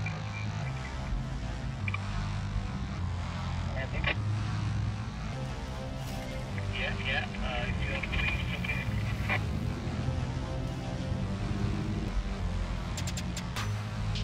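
Low, steady rumble of a car driving, heard from inside the cabin, with faint voices and music underneath.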